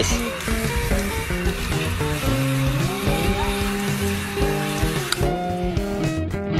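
Garden hose nozzle spraying water in a steady hiss that stops about five seconds in, under background music.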